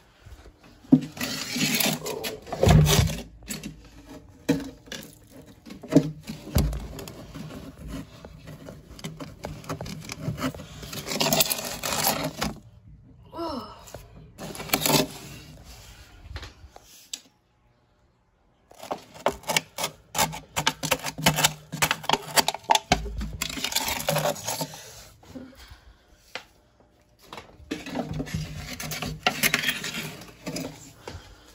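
Irregular scraping, rustling and clunking of hands and objects as soil-like substrate and decorations are cleared out of a glass tank. The sound drops out briefly a little past halfway.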